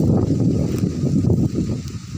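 Wind buffeting a phone's microphone outdoors: a loud, rough low rumble.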